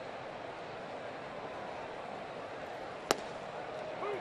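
Steady ballpark crowd murmur, with a single sharp pop about three seconds in as a 90 mph pitch smacks into the catcher's mitt for a called strike.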